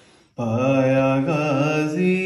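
A man singing an unaccompanied Urdu devotional kalam (manqabat) in a chanting style. After a brief pause, he starts a new phrase about half a second in and holds long, wavering notes.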